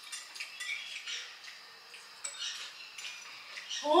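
Metal spoons and forks clinking and scraping against ceramic plates and a serving bowl while food is served and eaten: faint, scattered clinks and short scrapes.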